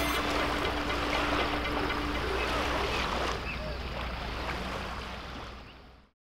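Lake water lapping, a steady noisy wash that fades out to silence near the end.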